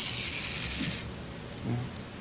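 Small electric motors inside a mechanical rat puppet running its legs: a steady high hiss that cuts off suddenly about a second in.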